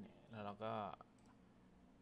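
A man speaking briefly in Thai, with a computer mouse click at the very start, then low room tone.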